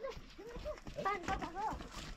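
People talking while a wooden table is lifted and carried, with a few hollow wooden knocks from its legs and frame in the second half.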